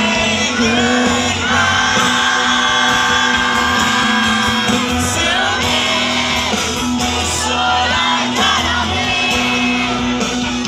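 Live band music through a large PA: a male lead vocal over acoustic guitar and drums, with many crowd voices singing and shouting along, recorded from within the audience.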